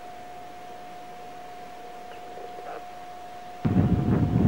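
Quiet, steady recording hiss with a thin constant hum. About three and a half seconds in, it jumps suddenly to loud, low rumbling noise on the microphone.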